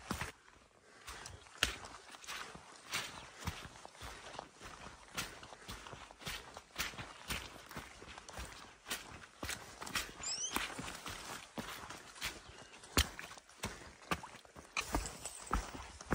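Hiking boots stepping along a wet, rocky trail: a steady walking run of footfalls with sharp knocks of soles on stone.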